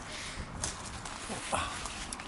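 Footsteps through dry undergrowth with sharp twig-snapping clicks, and a brief vocal sound about one and a half seconds in.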